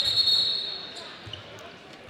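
Referee's whistle blown once to stop play: a single high-pitched blast right at the start that fades within about a second, followed by the murmur of the crowd in the gym.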